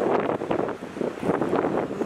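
Wind buffeting the microphone of a handheld camera carried along a street.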